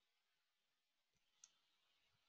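Near silence, broken by one faint, short click about one and a half seconds in.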